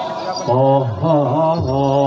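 A single low, male-range voice singing a slow, melismatic Javanese vocal line, its pitch wavering and sliding, in the chant-like style of the ebeg janturan.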